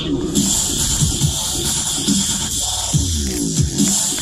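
Electronic music with a steady beat and repeated sweeping, falling bass notes.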